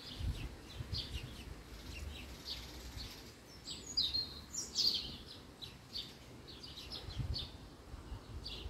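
Small birds chirping in many short, high calls, a few louder ones near the middle, over a low rumble.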